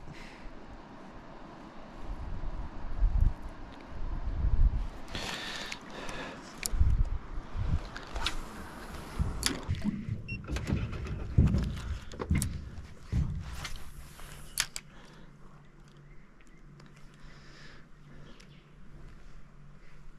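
Fishing tackle being handled in an aluminium boat: irregular knocks, clicks and rubbing as a soft-plastic lure is rigged, with a few short rushing sounds. A faint steady hum comes in about two-thirds of the way through, and the rod is cast again.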